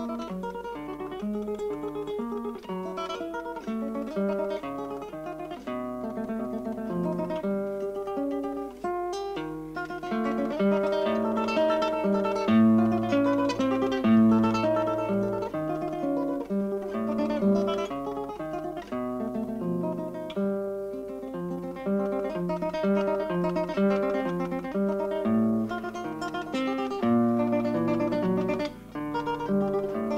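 Instrumental theatre music led by acoustic guitar playing plucked melody and bass notes, from a piece for guitar, clarinet and piano. The notes change several times a second, and the playing grows somewhat louder about a third of the way through.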